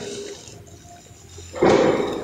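Pause in speech with quiet room tone, then a short, loud burst of noise near the end.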